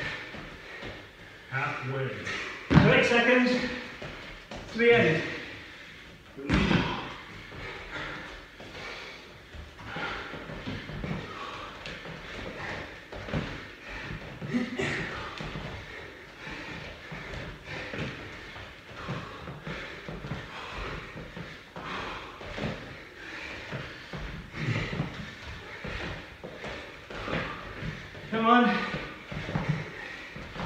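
Thuds of feet landing on gym mats and short strained voiced grunts in the first few seconds of hard bodyweight jumping, then heavy, repeated breathing from exhausted exercisers recovering, with a short voiced groan near the end.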